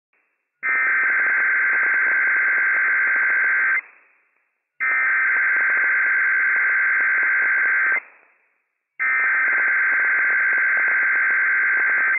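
Emergency Alert System SAME header from NOAA Weather Radio: three identical two-tone digital data bursts, each about three seconds long, with about a second of silence between them. This is the coded header that opens a Required Weekly Test, sent without the long attention tone.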